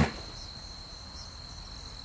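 Crickets chirping: a constant high trill with a fainter chirp every second or so.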